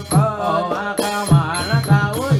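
Southern Thai Nora (Manora) ritual music: a chanted melodic line with sliding pitches over a steady drum beat of about four strokes a second, with bright metallic ticks from small cymbals keeping time.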